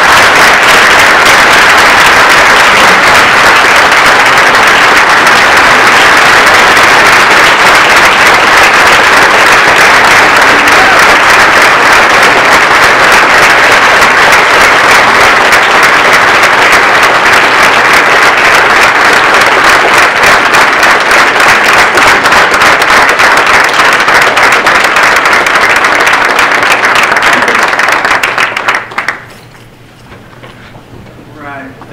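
Audience applauding: loud, dense clapping that dies away shortly before the end.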